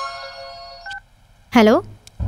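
A held music chord fades out, then a short electronic beep from a mobile phone sounds about a second in, followed near the end by a brief burst of voice as the call begins.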